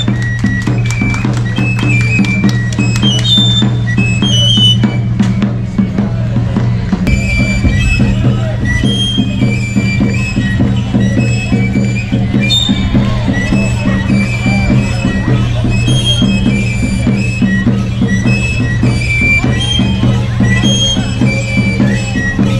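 Andean folk music from a pipe-and-drum player: a small flute plays a high melody of short notes over regular beats on a hand drum, with a steady low drone underneath.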